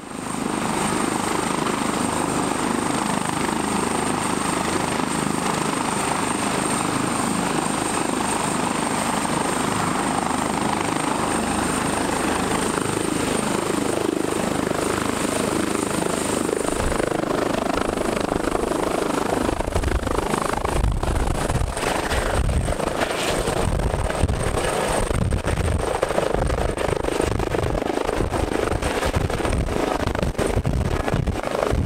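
ADAC Airbus H145 rescue helicopter running up and lifting off. A steady high turbine whine steps up slightly about halfway through, and the rotor's low pulsing beat grows strong from then on as it takes off.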